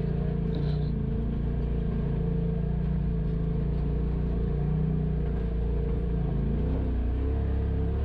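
Polaris RZR Pro XP side-by-side's twin-cylinder engine running steadily as it crawls along a rocky trail, its pitch dipping and rising briefly near the end.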